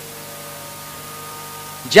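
Steady electrical hum with faint hiss from the microphone and loudspeaker system, a few thin unchanging tones, in a pause in the speech; a man's voice comes back in at the very end.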